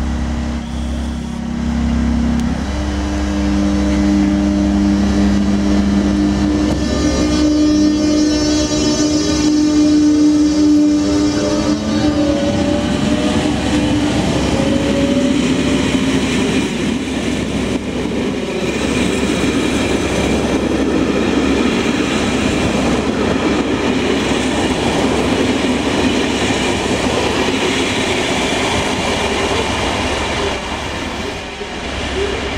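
ČD class 362 electric locomotive pulling away with a passenger train. Its drive gives a steady hum, then a whine that rises in pitch as it accelerates, typical of the class's thyristor pulse (chopper) control. After about 16 seconds the coaches roll past with wheels clattering over rail joints.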